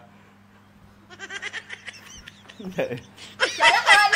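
Human laughter: quiet snickering starts about a second in and builds into louder laughing near the end, over a faint steady hum.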